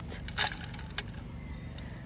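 Potting soil and tomato roots rustling and crumbling as the root ball is handled and lowered into the pot, with a short crackle about half a second in and a faint click about a second in.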